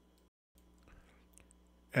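Near silence: faint room tone with a brief dead-silent gap near the start and a few faint small clicks about a second in. A man's voice starts speaking right at the end.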